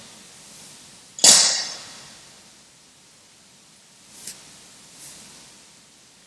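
A single quick swish of spray about a second in, fading within half a second: holy water flicked from an aspergillum over the wedding rings as they are blessed. Two faint clicks follow near the end.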